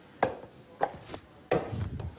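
A ball knocking sharply against hard surfaces: four knocks at uneven intervals.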